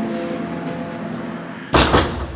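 Background music with sustained tones, fading slightly, then a single loud thud near the end.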